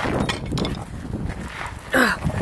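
Rustling and handling noise from a hand-held camera moving against a jacket and hood, with scattered light knocks.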